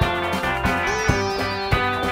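Indie rock band playing an instrumental stretch of a studio recording: guitars, bass and drums, with no singing. A held note slides up and sustains about halfway through.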